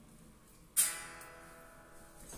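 Electric guitar chord strummed once about a second in, then left ringing and fading.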